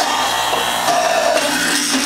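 Norwalk 290 juicer's cutter running and grinding a carrot as it is pushed down the feed tube: a steady motor hum under a pitched grinding whine that shifts in pitch a few times.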